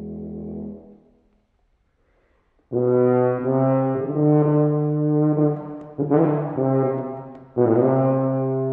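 F tuba playing a melody: a held low note dies away about a second in, followed by over a second of near silence, then loud sustained notes come in, with fresh attacks around six seconds and again near the end.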